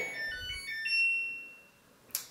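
Samsung Bubble washing machine playing its electronic power-on chime after its power button is pressed: a short tune of beeping notes at different pitches. The last note is held longer and fades away.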